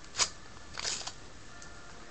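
Plastic wrapping being torn open on a box of trading cards: a sharp crackle, then a short crinkling rustle just before a second in.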